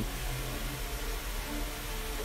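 Room tone: a steady low hum with a faint even hiss, no event standing out.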